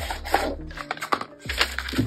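Handling of a cardboard gift box and paper: the lid slides off and a paper calendar block is lifted out, giving a series of short rustles and light knocks, over background music.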